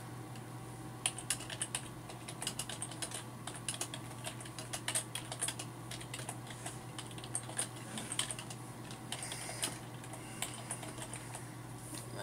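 Typing on a computer keyboard: a quick, irregular run of keystroke clicks that starts about a second in and goes on in bursts.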